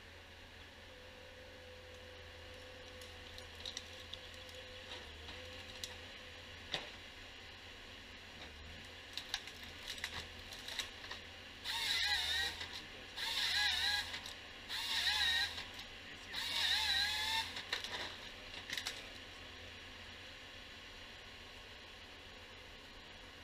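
Timberjack 1470D harvester head's hydraulic chain saw crosscutting a spruce stem four times, each cut about a second long, with a whine that wavers in pitch as the chain bites. Scattered clicks and knocks from the head come before the cuts.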